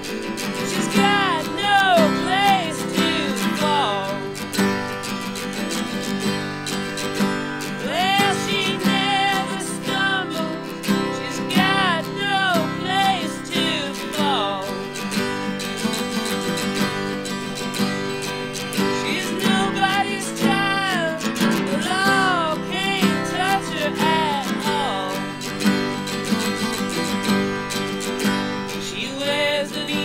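Harmonica played in a neck rack over a strummed acoustic guitar: the harmonica plays melody phrases with bent notes, pausing between phrases while the guitar strumming continues.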